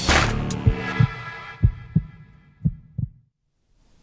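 The closing bars of an electronic TV sports-news theme. A hit at the start gives way to sustained chords that fade out under a few deep, spaced bass thumps, and the music ends a little over three seconds in.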